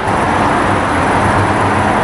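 Road traffic: a vehicle going by close at hand, a steady rush of tyre and engine noise.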